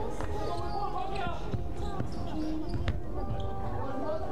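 A basketball bouncing a few scattered times on a gym floor, under the steady background noise of an indoor basketball hall with faint voices of players and bench.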